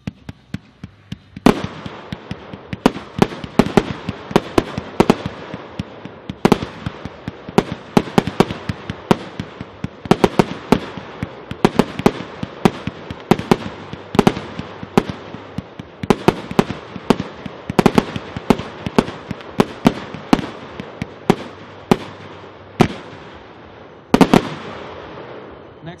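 A 100-shot 1.3G fireworks cake firing blue and silver fish mines to gold chrysanthemum: a long run of sharp shots, about two to three a second, with a steady hiss between them, starting about a second and a half in. A last louder volley comes near the end and fades away.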